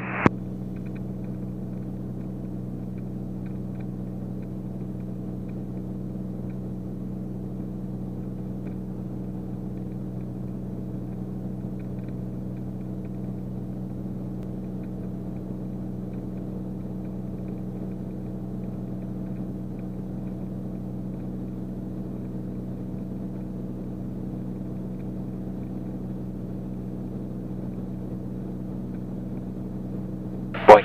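Steady drone of a Beechcraft Bonanza's piston engine and propeller in flight: an even hum made of several constant tones that does not change in pitch or loudness.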